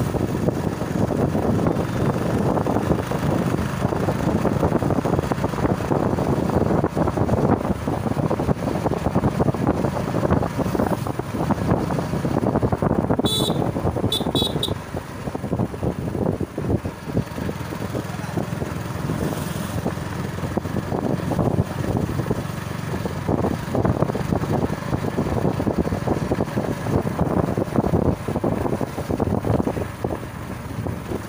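Wind buffeting the microphone over the running engine of a motorcycle being ridden along a road. About halfway through, a vehicle horn gives one short beep and then two quick ones.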